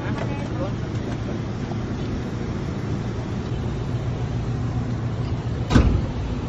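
Steady low rumble of vehicle engines and road traffic beside an idling passenger van. A single loud thump comes near the end.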